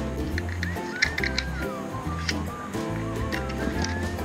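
Background music: pitched notes over a steady low beat, with a few short wavering high tones and scattered light clicks.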